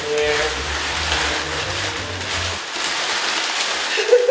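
Paper banknotes rustling and crinkling steadily as handfuls are pushed inside a shirt.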